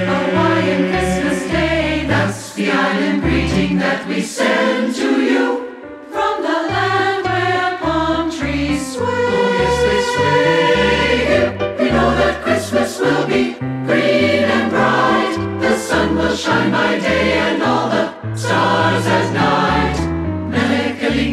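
Choir singing a Christmas song in parts over an instrumental accompaniment with a steady, moving bass line.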